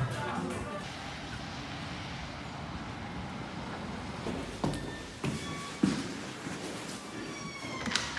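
Outdoor ambience picked up while walking with a handheld phone camera, with a few sharp knocks in the second half. A brief squeak comes near the end, as a door handle is gripped.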